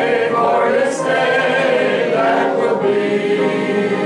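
A small mixed church choir of men's and women's voices singing a hymn together, in long held notes.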